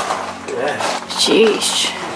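Short wordless vocal sounds from a hiker, such as grunts or exclamations, twice, the second louder, echoing a little off the close rock walls, with a brief hissing scuff just after the first second.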